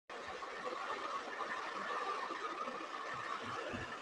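Faint, steady room noise and hiss picked up by an open microphone on a video call, cutting in abruptly out of dead silence at the very start.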